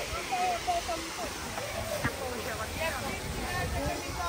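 Faint voices of people around a swimming pool, with a few short calls, over a steady rushing background noise.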